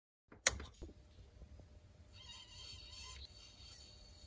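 A single sharp click of the isolator switch being turned on, then the faint sound of the immersion heater element heating the water in the tank, like a kettle, a little stronger about two to three seconds in: the element is working again now that its tripped thermostat has been reset.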